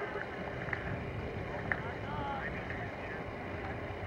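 Steady wind rumble on the microphone, with a faint distant voice calling about two seconds in and a couple of faint clicks.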